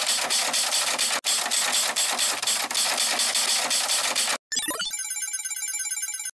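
Edited-in sound effects. A fast, even rattling roll stops abruptly about four and a half seconds in, then after a short break a ringing pitched tone slides up briefly and holds, timed to the reveal of the results chart.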